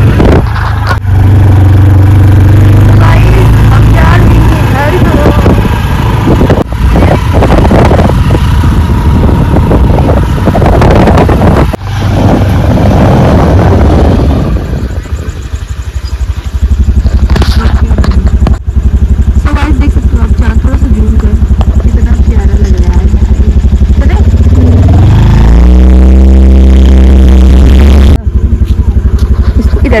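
Engine of a moving two-wheeler running under heavy wind rush on the microphone. Near the end the engine note rises as it picks up speed, then holds steady.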